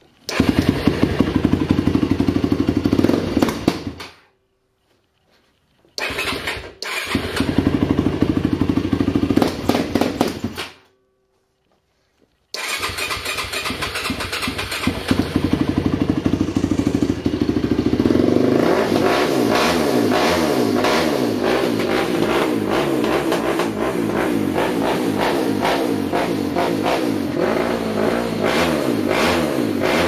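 A 2008 Yamaha YFZ450's single-cylinder four-stroke engine starts and runs briefly, then dies, twice over. On the third start it keeps running, and from about halfway through its pitch climbs and falls as the throttle is worked. The stalling is the bad bog leaving idle that the quad has, where it stalls or won't take the gas when first given throttle.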